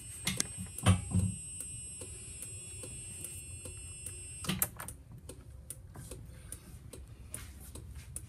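Light, regular clicking, with a steady high-pitched electronic whine that cuts off abruptly about four and a half seconds in. A couple of soft thumps come about a second in.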